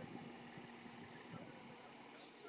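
Faint, steady engine of a fire truck pulling out and turning onto the street, with no siren sounding.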